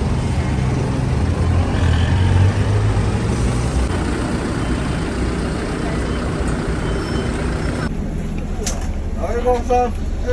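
Toyota minibus engine idling at the stop, a steady low rumble, with people's voices around it. About eight seconds in the sound changes to the bus interior, and a voice speaks near the end.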